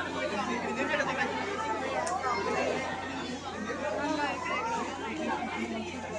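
People's voices talking over one another, with no clear words, over a steady low hum.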